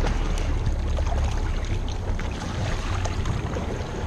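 Boat motor running slowly ahead in gear, a steady low rumble with water rushing along the hull and wind on the microphone; the rumble eases a little after about a second.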